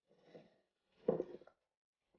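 A faint soft rustle, then about a second in a brief, quiet human vocal sound such as a short sigh or murmur.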